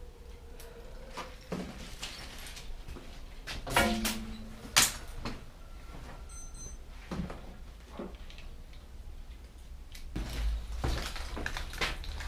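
Scattered knocks, clicks and rustling of small objects being handled on a workbench, with the sharpest click about five seconds in, over a low steady hum.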